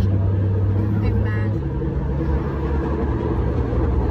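Light-rail trolley car running, heard from inside: a steady low rumble and hum whose pitch steps up and down as the car's speed changes.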